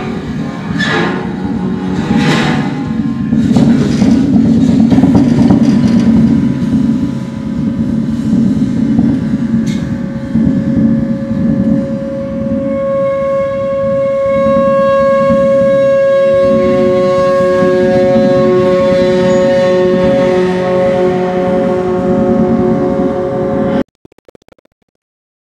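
Free-improvised percussion: a few sharp strikes on drums and metal at first, then a large gong bowed at its edge, giving several sustained ringing tones that swell and hold over a low rumble. It cuts off suddenly at the end.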